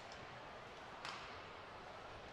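Faint ice-hockey arena ambience from the game in play: a steady soft hiss of rink noise, with a brief slightly louder scrape about a second in.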